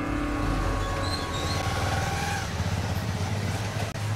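Busy street noise with a small motorcycle engine running as the bike rides slowly along the lane.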